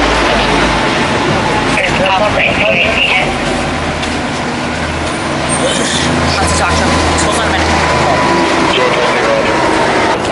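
Road traffic, with a vehicle engine's low, steady hum through the middle few seconds, and indistinct voices of people talking.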